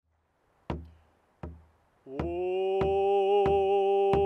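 Music: a drum struck in a slow steady beat, about one and a half beats a second, joined about two seconds in by a voice singing one long held note over it.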